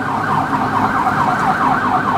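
Ambulance siren on a SAMU 192 emergency van, sounding a loud, fast warbling yelp that rises and falls about eight times a second.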